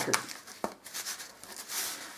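A long strip of corrugated cardboard being handled and pressed by hand: soft rubbing and rustling of the cardboard, with two light taps in the first second.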